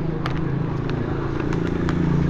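Wrapping paper being torn and handled in a few light crinkles, over a steady low mechanical hum.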